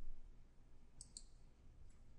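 Two quick computer mouse clicks about a second in, a fifth of a second apart, then a fainter click near the end, as a dialog button is pressed. A brief low thump comes right at the start.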